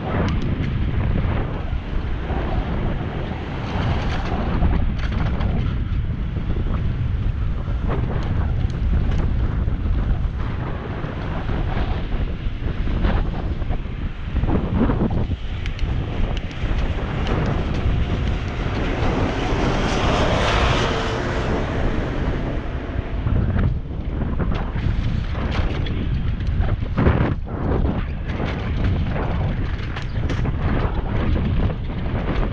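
Wind buffeting an action camera's microphone during a bicycle ride: a loud, steady rumble, swelling into a brighter rush about twenty seconds in.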